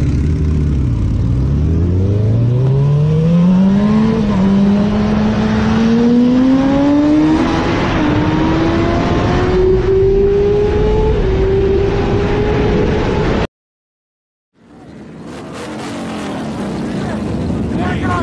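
Sportbike engine under hard acceleration: its pitch drops for a moment, then climbs steadily for about ten seconds, dipping briefly about four seconds in. It cuts off suddenly, and after a second of silence a different, noisier recording fades in.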